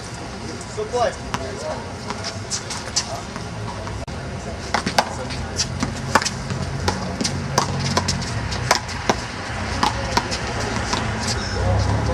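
A small rubber ball being hit and smacking off a concrete wall and court in a fast rally: sharp, irregular cracks, several a second, mostly in the middle stretch.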